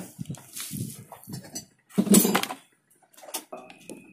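Scattered knocks and light clinks from handling cables and a plug on a workbench while a pump test rig is set up. A short, louder sound comes about two seconds in.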